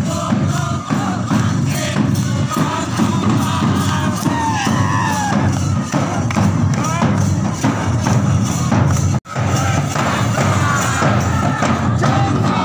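Double-headed hand drums beaten in a steady, loud rhythm by marchers in a street procession, with crowd voices shouting and cheering over the drumming. The sound cuts out for an instant a little after nine seconds in.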